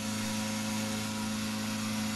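Hot-air balloon inflator fan running steadily: a low even drone under a broad rushing of air from the blower, played back turned down to a noticeably quieter level.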